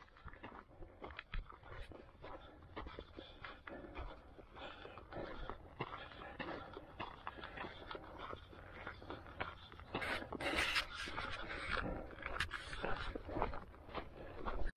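A hiker breathing hard while climbing a steep uphill trail, with footsteps scuffing on the dirt, louder about ten seconds in.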